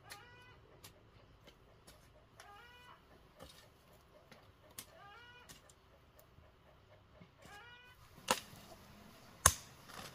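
A hand hoe chopping into dry soil, with faint scrapes and two loud sharp strikes near the end. Behind it an animal calls over and over, a short pitched call about every two and a half seconds.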